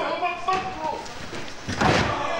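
Low voices, then a single thud on the wrestling ring's canvas near the end.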